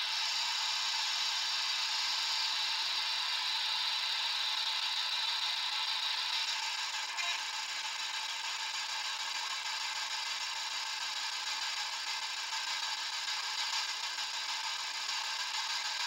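Steady hiss with no beeps, clicks or voices, easing slightly after about six and a half seconds.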